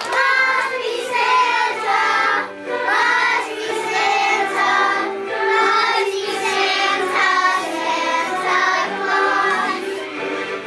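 A group of young children singing a song together in chorus, continuously.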